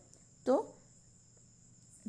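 A faint, steady high-pitched drone runs in the background throughout, with a woman saying a single short word about half a second in.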